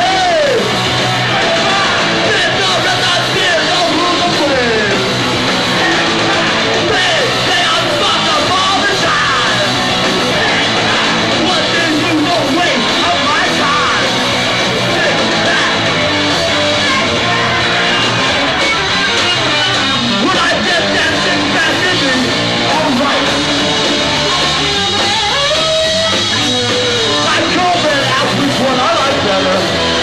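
Hardcore punk band playing live: loud distorted electric guitar, bass and drums, with shouted vocals.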